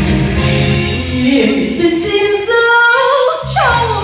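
Karaoke backing track playing an instrumental break in a slow ballad. The bass and beat drop out about a second in, leaving a gliding lead melody, and come back in near the end.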